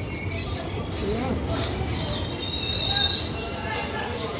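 Passenger train's steel wheels squealing against the rails in several steady high-pitched tones over a continuous low rumble, as the train slows alongside the platform on arrival.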